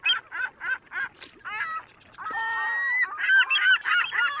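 Geese honking: a run of short calls about three a second, then longer, overlapping calls that build into a crowded chorus of honks from about two seconds in.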